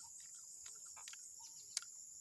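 Steady high-pitched insect chorus, with one small click near the end.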